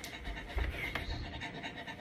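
A person's soft footsteps on the floor and quiet breathing as he comes up close to the microphone, with a few dull low thumps.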